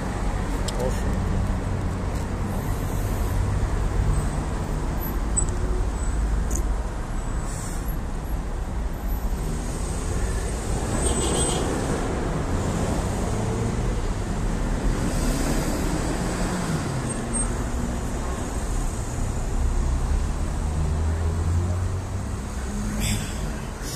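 City street traffic: car and bus engines running with a steady low hum as vehicles pass.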